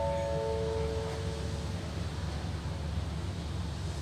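A chime of descending tones rings out and fades about two seconds in, over a steady low rumble from the train waiting at the platform.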